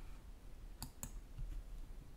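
Two quick, faint mouse-button clicks about a second in, clicking an on-screen button.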